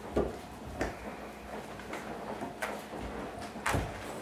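Handling noise: about four sharp knocks and taps, the loudest near the end, over faint room hum, as a book is handled and opened.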